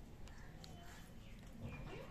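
Faint sounds from goats, with a short low call near the end.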